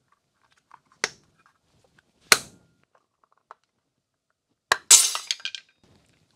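3D-printed plastic center cap with snap clips being pressed into an alloy wheel's center bore: a few sharp plastic clicks as the clips snap into place, the loudest about two seconds in. Near the end a sharper click is followed by a short crackly rattle of plastic.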